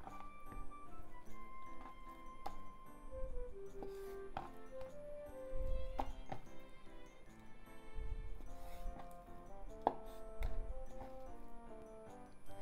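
Kitchen knife cutting raw chicken tenderloins on a wooden cutting board, with separate knocks of the blade meeting the board every second or two, under light background music carrying a melody.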